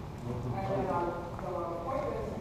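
Footsteps of sandals on a tile floor as someone walks across the room, under low murmured talk.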